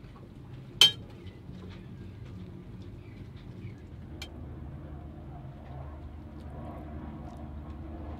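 A single sharp metallic clink of a cooking utensil against metal cookware about a second in, then a fainter tick around four seconds, over a low steady hum.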